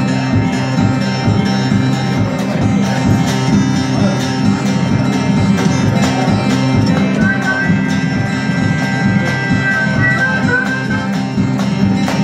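Live acoustic blues band: acoustic guitar playing over a steady washboard rhythm, with a harmonica sounding long held high notes from about seven seconds in for several seconds.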